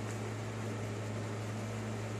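A steady low hum with an even hiss behind it, unchanging throughout: background room tone with no other sound.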